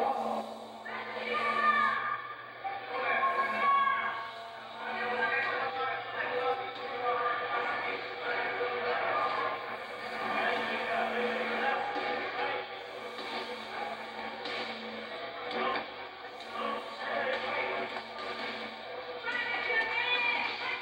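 Indistinct voices mixed with music, with a few steady held tones underneath.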